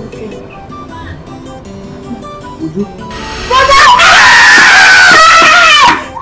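Light background music of picked notes. About three and a half seconds in, a woman lets out a long, loud, high-pitched shriek of excitement that drops in pitch as it ends.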